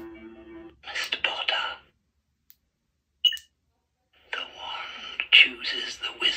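Lightsaber sound board playing the Elder Wand sound font through its small speaker after font selection: a held musical chord that stops less than a second in, then breathy whispered voice effects, a short high chime about three seconds in, and more whispering near the end.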